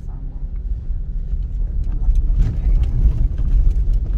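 Car cabin noise on a rough, wet dirt road: a steady low rumble from the tyres and body that grows louder about halfway through, with scattered clicks and knocks as the car jolts over the unpaved surface.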